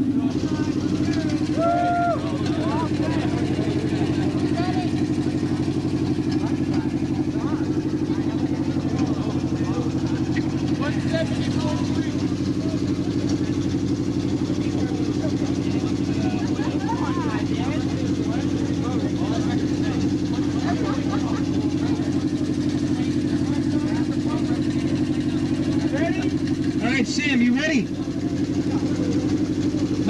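A competition car audio system playing a loud, steady low bass tone that drones without a break through a timed dB drag run. Faint voices come in near the end.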